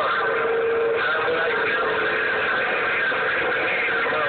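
CB radio static: a steady hiss with a low steady tone in the first second that carries on more faintly, and faint garbled voices under it.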